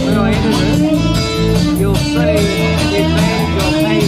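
Live rock 'n' roll band playing, with guitar over a steady drum beat.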